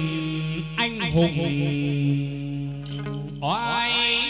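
Chầu văn ritual music: a man sings long, held, wavering notes to the accompaniment of a đàn nguyệt moon lute. There are a couple of sharp percussive clicks about a second in, and the voice slides up into a new phrase near the end.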